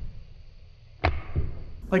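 Blade cutting through the plastic nozzle tip of a tube of gasket sealant: one sharp click about a second in, then a soft low thump.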